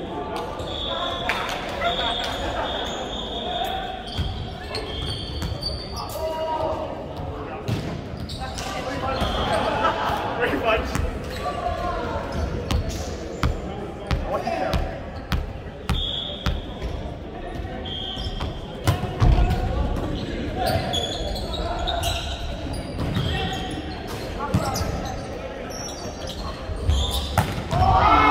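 Indoor volleyball in a large hall. Players' voices call and chatter, the ball thuds as it is bounced and struck, and sneakers give short high squeaks on the wooden court, all echoing around the hall. It grows louder near the end as a rally starts.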